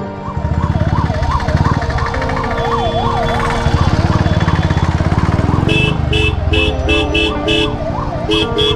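Ambulance siren yelping, its pitch rising and falling quickly, over the close running of a motorcycle engine. Past the middle, a horn sounds in short beeps about three times a second.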